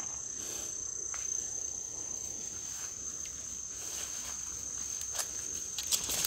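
A steady, unbroken high-pitched insect trill from crickets or similar field insects, with a few faint clicks.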